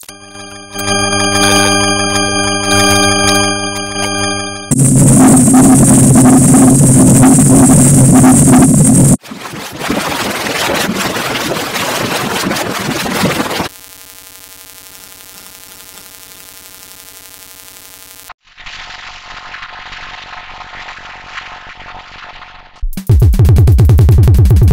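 A short clip heavily distorted by stacked digital audio effects, switching abruptly to a new effect about every four and a half seconds: a buzzy pitched tone, then loud harsh noise, then a quieter buzzing tone, then a muffled version, and a loud blast again near the end.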